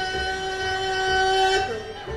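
Bluegrass band holding one long final note over a steady bass pulse; the note slides up and breaks off near the end.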